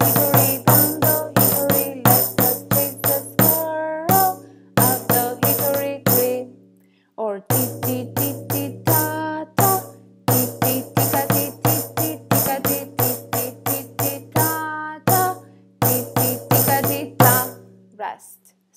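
A headed tambourine with jingles struck with a wooden drumstick, tapping out the word rhythm of a children's song in quick runs of strokes. Each stroke has a ringing drumhead and a jingle rattle, and the phrases are split by brief pauses, the longest about seven seconds in.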